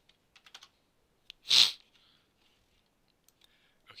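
A few keystrokes on a computer keyboard, and about one and a half seconds in a short, loud burst of noise, much the loudest sound.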